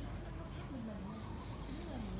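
A person's voice speaking, words not made out, over a steady low background hum.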